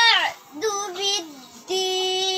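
A young girl chanting Quran recitation (tajweed) in a high, melodic voice: a falling ornamented run at the start, a short rising-and-falling phrase, then a long steady held note starting just before the end.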